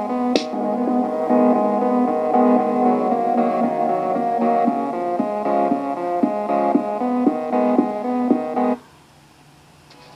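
Music playing back from a home-recorded cassette through the small speakers of a Sony CFD-S01 portable CD/cassette boombox: a steady instrumental track that cuts out abruptly about nine seconds in, leaving only a faint background.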